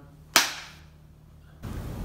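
A single sharp hand clap about a third of a second in, with a short ringing tail from the room, marking the start of a take after a countdown.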